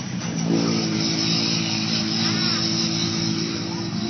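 Polaris RZR side-by-side's engine running hard under load as it wades through deep muddy water. About half a second in it gets louder and then holds a steady pitch.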